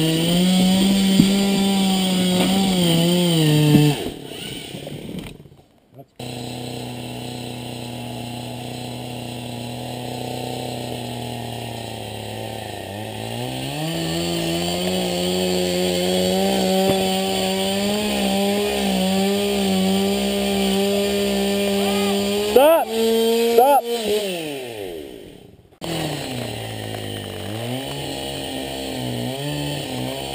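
Husqvarna 365 SE 65 cc two-stroke chainsaw engine driving a Lewis chainsaw winch. It runs at high revs, drops to a low speed, then holds a higher steady speed for about ten seconds as it winches. Near the end it revs briefly up and down, then settles back to a low speed.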